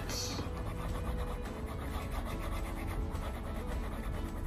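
Stylus tip rubbing and tapping on an iPad's glass screen while colouring in, a soft scratchy patter of short strokes over a low steady hum.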